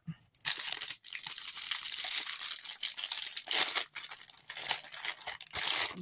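Clear plastic bag crinkling and rustling as it is pulled open by hand, in dense irregular rustles for several seconds.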